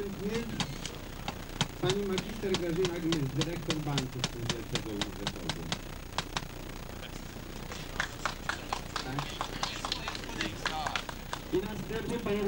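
A small hammer tapping an honorary nail into a wooden banner flagstaff: a long run of quick light strikes, about three a second, pausing briefly past the middle and then going on. Voices talk underneath.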